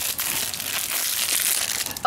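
Foil blind-bag packaging and paper leaflets crinkling and crackling as they are handled and crumpled.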